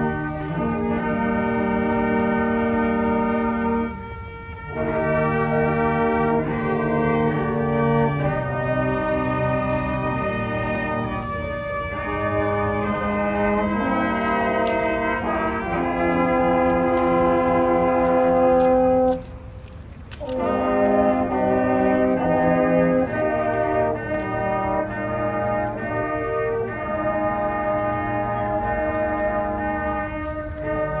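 Brass band playing a slow piece in long, held chords, with two short pauses between phrases, one about four seconds in and one about nineteen seconds in.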